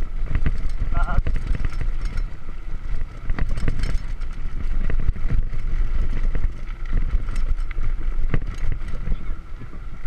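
Mountain bike rolling over a rough, rocky dirt road, heard from a chest-mounted action camera: a steady rumble of tyres and wind on the microphone with frequent rattles and knocks from the bike over the stones.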